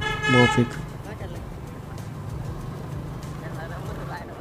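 A short horn toot in the first moment, then a motorcycle running steadily under way, its engine hum mixed with wind and road noise.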